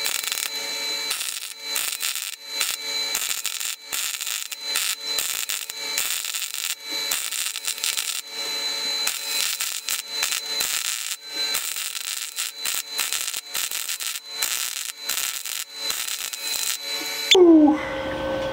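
ST Welding Tools MIG 250G, a Chinese 250-amp MIG welder, running a long bead at full power on thick mild-steel plate: a steady, dense crackle and sputter of the arc. It is being run at maximum settings to test its duty cycle. The arc stops shortly before the end, and a brief louder sound follows.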